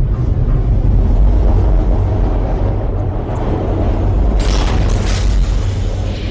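Deep, steady rumble, as of a tube train coming through the tunnel in a film soundtrack, with a short burst of hiss about four and a half seconds in.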